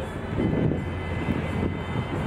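Steady low engine rumble with no sharp events.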